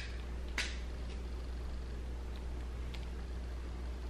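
Quiet room with a steady low hum, and a soft click about half a second in followed by a few fainter ticks as a small plastic nori punch and a seaweed sheet are handled.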